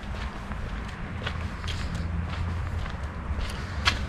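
Footsteps on concrete, a few soft steps spaced unevenly, over a low steady rumble.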